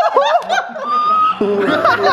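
A group of young men laughing and yelling over one another, with a brief high held squeal about halfway through.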